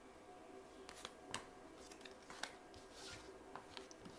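Faint, scattered ticks and soft taps of tarot cards being handled and laid down on a cloth-covered table: four or so small clicks over an otherwise very quiet background.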